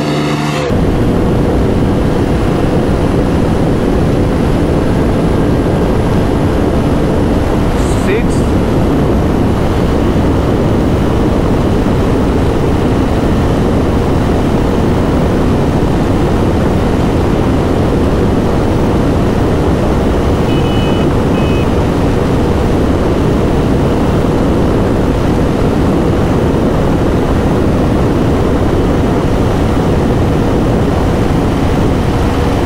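Loud, steady rush of wind over the microphone on a Bajaj Dominar 400 held at full throttle at about 155 km/h, with its single-cylinder engine droning steadily underneath.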